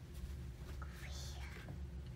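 A small child whispering, a short hissy burst about a second in, over a low steady hum.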